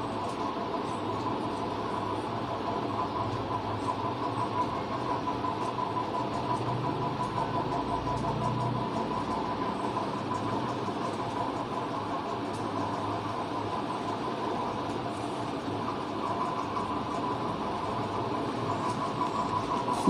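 Steady mechanical hum and running noise, with a faint steady tone near 1 kHz and a slight low swell about eight seconds in.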